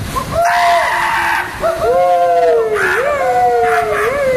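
Several young men yelling and screaming together, long drawn-out wordless calls whose pitch slides up and down, two voices at times overlapping.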